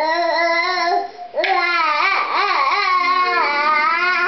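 A baby vocalizing in drawn-out, sing-song tones that waver up and down in pitch, in two long stretches with a short break a little over a second in.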